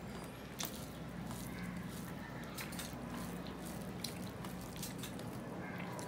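Fingers mixing rice with mashed potato and bean bhorta on a steel plate: soft, squishy sounds with a few small clicks spaced about a second apart.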